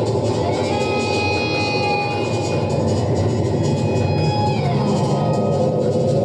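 Electric guitar played live through an amplifier, holding long sustained notes over a dense, steady wash of sound. About four and a half seconds in, a held note slides down in pitch.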